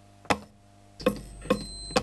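A sharp click, then a low hum that comes in about a second later, and a steady high-pitched electronic beep lasting about half a second that ends with a click.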